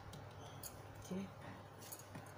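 Faint flicks and light slides of tarot cards as one is drawn off the top of the deck, a few soft clicks of card edges, with one short spoken word about a second in.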